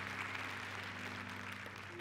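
Congregation applauding steadily, tapering slightly near the end, with a steady low hum underneath.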